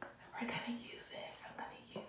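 A woman's excited whispered speech, with a couple of short voiced sounds.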